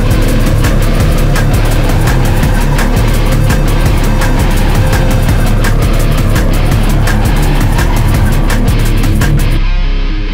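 Loud, dense instrumental rock music with guitar and rapid percussive hits. It cuts off suddenly just before the end, leaving a few notes ringing out.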